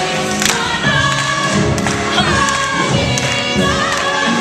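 A stage ensemble singing a show tune together over musical accompaniment, with a few sharp clicks through it.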